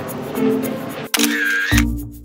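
Background music; about a second in, a camera-shutter sound effect cuts in as a sudden bright hiss with a wavering tone, ending in a low thump. After it the music thins to sparse, separate notes.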